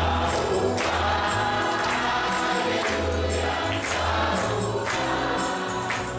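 Gospel singing by a group of voices with instrumental accompaniment: a steady bass line under the voices and percussion hits recurring throughout.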